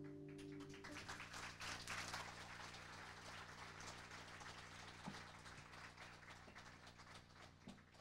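Faint audience applause after the final chord, which rings out and dies away in the first second. The clapping is densest over the first couple of seconds, then thins to scattered claps.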